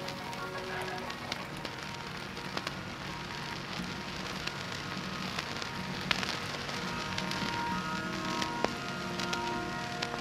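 A quiet passage of lofi hip-hop: a few sparse held notes over a steady crackling hiss, with scattered sharp clicks.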